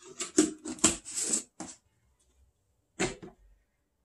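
A quick run of plastic clicks and taps as a supplement powder tub, its lid and scoop are handled, then one knock about three seconds in.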